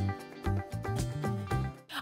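Background music: an instrumental track with short plucked-sounding notes over a bass line, which cuts off abruptly just before the end.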